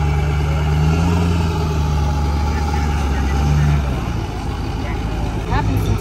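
Pickup truck engine idling on a chassis dynamometer: a steady low drone that drops away about four seconds in.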